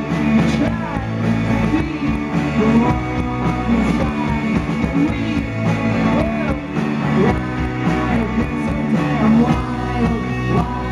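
A rock band playing live, led by electric guitar, with gliding bent or slid guitar notes over a steady bass and rhythm.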